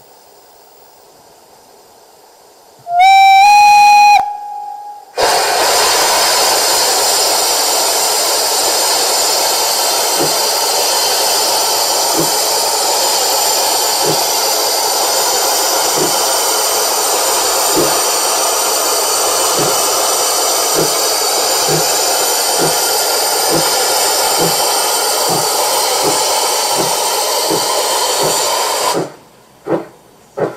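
Loudspeaker sound of a Gauge 1 (1:32) model steam locomotive, a class 59 brass hand sample: a short steam whistle about three seconds in, then a loud steady steam hiss from the cylinders with faint exhaust beats that come faster and faster as the locomotive pulls away. The sound cuts off just before the end.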